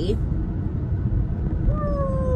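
Steady low road and engine rumble inside a moving car's cabin. Near the end, a woman gives a short closed-mouth hum that falls slowly in pitch.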